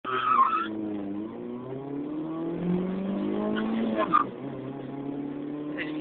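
Fiat Palio 1.0 four-cylinder engine accelerating hard from a standing start: the revs climb steadily, drop at a gear change about four seconds in, then climb again. A brief tyre squeal at the launch.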